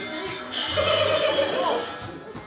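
Music with a cartoon-style comic sound effect: a wavering, held tone that starts about half a second in and ends in a short pitch glide.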